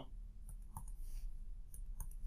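Faint clicks and taps of a stylus on a tablet screen while digital ink is written, over a low steady hum.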